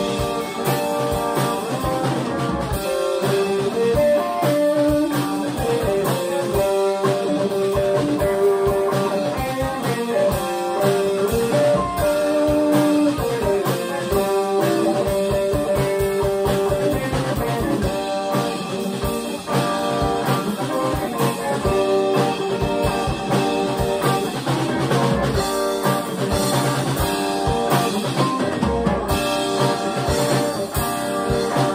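Live rock band playing: two electric guitars and a drum kit, with a guitar line of held notes stepping up and down over steady drumming.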